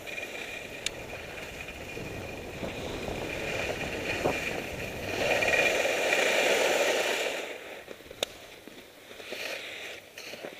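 Snow hissing and scraping under a rider's edges on soft snow, with wind rushing over the microphone. The scraping swells during a long carved turn from about five seconds in and dies down about two and a half seconds later. Two sharp ticks come near the start and about eight seconds in.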